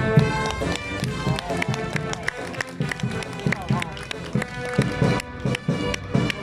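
A brass band playing, with people's voices mixed in and many sharp clicks and taps on top.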